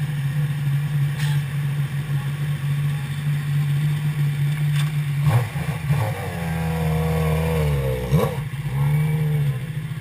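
Sport motorcycle engine idling steadily, then revved with its pitch rising and falling as the bike pulls away, with a quick rev blip a little after the eighth second. The idle returns briefly as another motorcycle arrives near the end.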